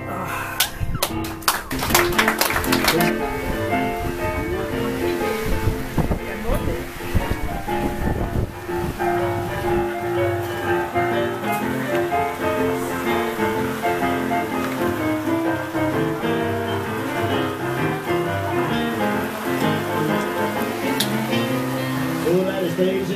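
Two electric keyboards with a piano sound play rolling blues boogie-woogie, chords and bass notes moving in a steady rhythm. A run of sharp clicks sounds over the playing about one to three seconds in.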